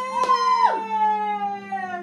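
Women cheering with a long held "woo" that slowly falls in pitch, with a hand clap or two at the start. One voice slides down and drops out partway through, and the cheer fades just after.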